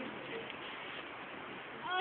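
Steady background hiss with a few faint voices, then right at the end a girl's high-pitched exclaimed "Oh" begins.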